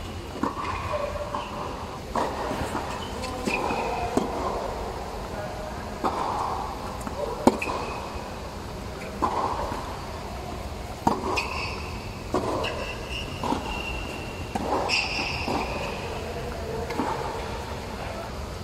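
Tennis balls being struck by rackets and bouncing on a hard court: sharp pops every second or two, one much louder than the rest about halfway through. Short squeaks of court shoes come in the second half.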